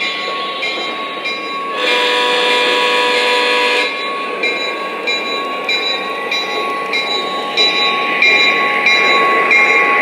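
Lionel O-gauge GP35 model diesel locomotives running under power, their onboard sound system playing a steady diesel engine drone. About two seconds in, a horn blast sounds for about two seconds. After it, an even clicking comes roughly twice a second as the wheels roll over the track.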